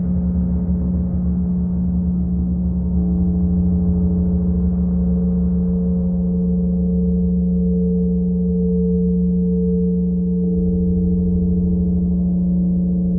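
Quartz crystal singing bowls ringing with long, steady overlapping tones as a mallet is run around a bowl's rim, a further tone joining about three seconds in. A modular synthesizer adds a low, pulsing drone underneath.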